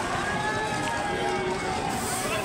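Crowd chatter: several people talking at once, none clearly in the foreground.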